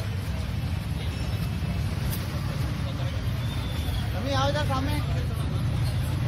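Busy street ambience: a steady low rumble of traffic and crowd chatter, with one voice calling out briefly about four seconds in.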